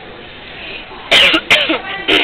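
Two short, loud vocal bursts from a person close to the microphone, about a second in and again half a second later, over a faint murmur of voices.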